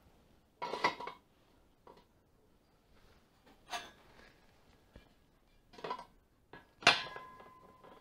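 Lengths of thin-wall steel box-section and round tube knocking and clanking on a concrete floor: several separate clanks, the loudest about seven seconds in, leaving a short metallic ring.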